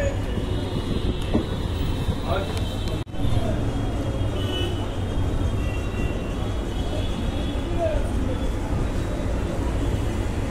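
Busy street-side ambience: a steady rumble of road traffic with indistinct chatter of people in the background. The sound drops out briefly about three seconds in.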